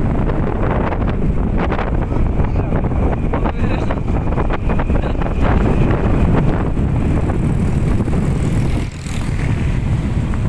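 Wind buffeting the microphone of a motor scooter riding through heavy rain, a steady low rush that dips briefly near the end.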